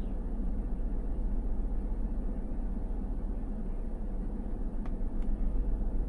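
Steady low cabin hum inside a parked 2024 Toyota Tundra, with two faint clicks about five seconds in.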